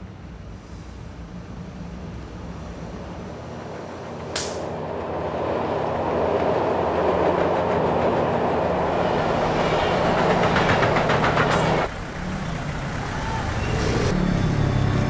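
A low steady hum, then a sharp click about four seconds in, followed by a loud rushing rumble that swells and cuts off abruptly about twelve seconds in.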